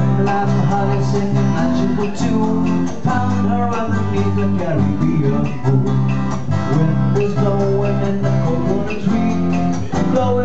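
A live band playing an instrumental passage: plucked acoustic guitar over steady low bass notes, with a melody line moving above.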